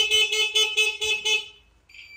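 Electric horn of a Honda CD50 (Benly 50S) motorcycle sounding once, a steady honk of about a second and a half, tested at the handlebar switch during a check of the bike's electrics.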